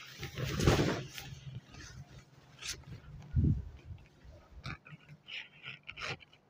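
Silk saree fabric swishing as it is lifted and spread out, loudest in the first second, followed by softer rustles and a low brush of cloth about halfway through.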